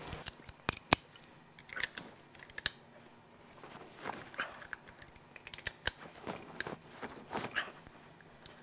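Metal hand tools clicking and clinking as a wrench with an extension works on the diesel engine's fuel injectors and glow plugs: irregular sharp clicks, loudest about a second in.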